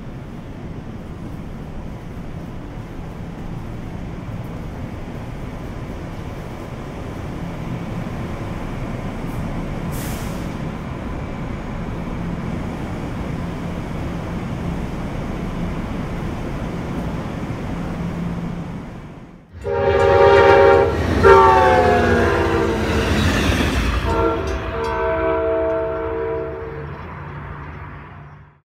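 Steady rumble of a station platform with trains idling. It breaks off about two-thirds of the way in for a loud multi-tone train horn, whose chord sags in pitch at first and is then held steady for a few seconds.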